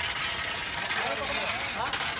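Faint background voices over steady outdoor noise with an engine running somewhere.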